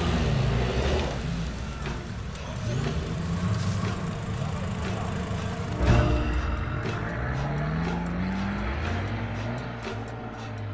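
Off-road 4x4 engines revving as the vehicles drive through deep mud, the engine note climbing in pitch in the second half, over background music.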